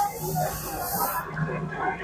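Smoke machine jetting fog with a steady high hiss that cuts off a little over a second in.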